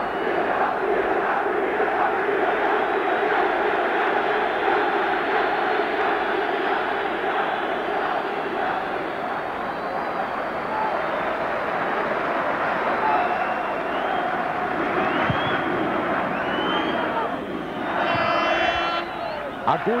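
Large football stadium crowd singing and chanting together, loud and sustained, right after a near-miss by the home side late in the match.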